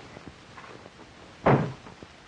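A panelled wooden door shut once, about one and a half seconds in, with a short ring-out after the bang.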